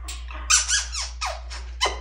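African grey parrot squeaking: a run of high squeaky calls starting about half a second in, several sliding down in pitch, then a sharp kiss-like smack near the end.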